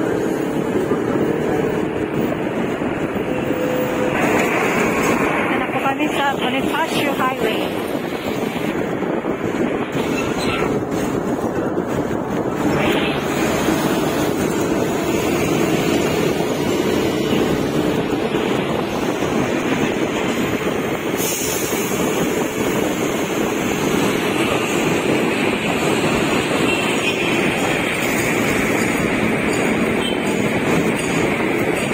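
Steady road and traffic noise heard from a moving vehicle in dense city traffic: engines and tyres running continuously.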